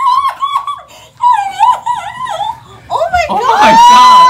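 A teenage girl screaming and sobbing with joy: short high-pitched cries in quick bursts, then a long, loud high scream near the end as other voices join in.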